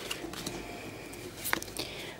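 Faint rustle of a small stack of Pokémon trading cards handled in the hand as one card is slid from the front of the stack to the back, with one short sharp card click about one and a half seconds in.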